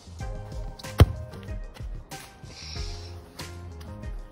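Background music with a steady beat, and one sharp thump about a second in: a football being kicked.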